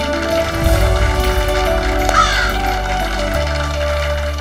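Dramatic TV background score: deep sustained notes that swell into a pulsing rumble from about half a second in until near the end, with a short, gliding, call-like comic sound effect about two seconds in.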